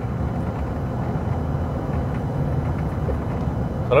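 Steady low rumble of road and engine noise heard inside the cab of a pickup truck cruising at speed on a straight road.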